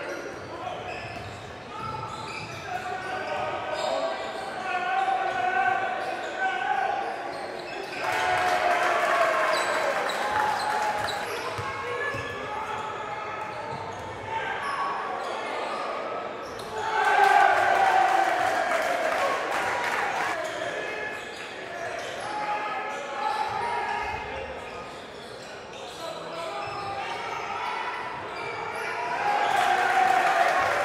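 Basketball being dribbled on a hardwood gym floor, with players' and spectators' voices echoing in a large hall.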